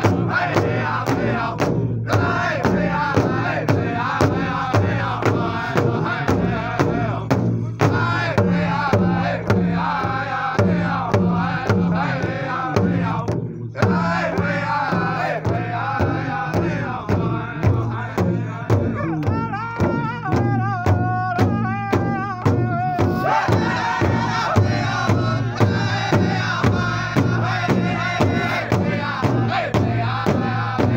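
Powwow drum struck in a steady beat, a little over two beats a second, under a group of singers chanting, with a couple of brief breaks in the song.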